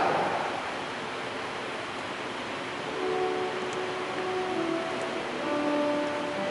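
Organ playing slow, held chords that come in about three seconds in, the introduction to the sung responsorial psalm after the first reading. Before it there is only a faint, fading hum of the reverberant church.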